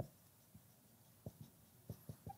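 Faint strokes of a marker pen writing on a whiteboard, with one sharper click at the very start.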